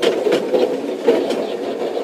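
Motorised target carrier of an indoor shooting range running, moving a paper target along its overhead track: a steady motor noise with a few faint clicks.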